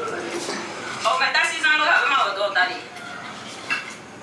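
Wooden pestle grinding tomatoes, onion and pepper in an earthenware bowl, with scraping and light knocks. About a second in, the mother's voice calls from inside the house for nearly two seconds, without clear words.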